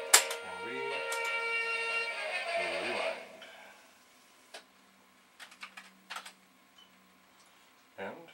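A sharp click, then steady held musical tones with two short low hums, fading out about three seconds in. A few light keystrokes on a Commodore computer keyboard follow in near silence.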